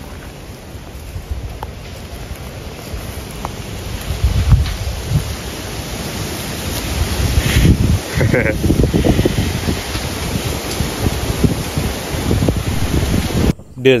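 Wind buffeting the microphone in gusts, growing louder about four seconds in, with a voice heard briefly around the middle.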